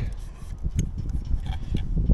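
Light clicks and rubbing of the plastic parts of a spinning bird scarer as they are pushed together, a few faint ticks spread across the moment. Under them runs a low rumble of wind on the microphone.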